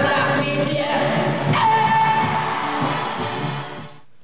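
Live calypso performance: a woman singing into a microphone over a full band, holding one long note from about one and a half seconds in. The music fades out near the end.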